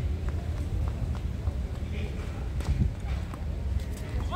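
Tennis rally on an outdoor hard court: several sharp pops of racket strokes and ball bounces, spaced irregularly, with players' running footsteps, over a steady low rumble.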